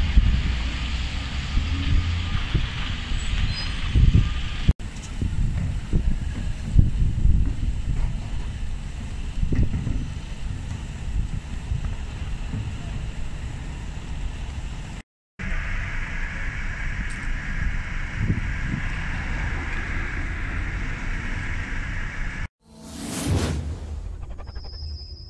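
Wind buffeting the microphone over steady outdoor street background noise, broken by two brief dropouts. Near the end a whoosh sweeps in as a logo sting begins.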